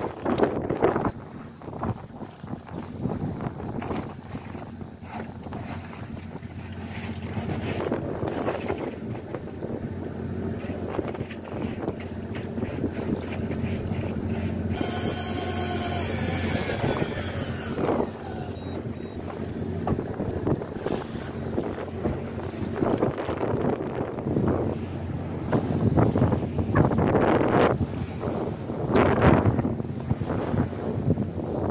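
A fishing boat's engine hums steadily under wind buffeting the microphone and the wash of a rough sea. About fifteen seconds in, a short higher sound slides down in pitch.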